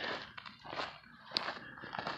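Footsteps crunching on a loose gravel dirt road, about two steps a second.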